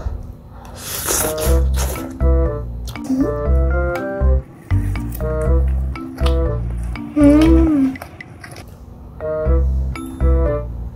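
Background music: a light, bouncy keyboard tune with a steady bass beat, with a brief rising-and-falling note about seven seconds in.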